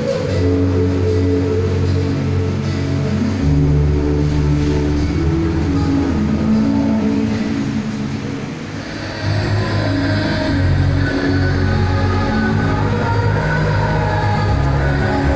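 Loud recorded backing music for a mime act, built on long held low bass notes that shift every few seconds; after a brief dip about nine seconds in, a brighter, hissing layer joins the music.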